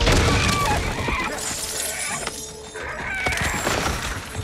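Mass of heavy wooden tree roots cracking and crashing down in a film sound effect. It is loudest at the very start, eases off a little past two seconds, and surges again near three seconds.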